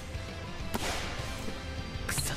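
Anime soundtrack: background music with one sudden swishing hit about three quarters of a second in, a sports-action sound effect.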